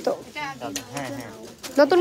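A woman's voice in short bursts at the start and near the end, with quieter voice-like murmuring in between.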